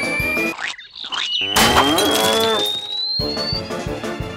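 Cartoon sound effect of cows mooing, with a long high whistle rising steadily in pitch. Background music cuts out for about a second before the moo and returns near the end.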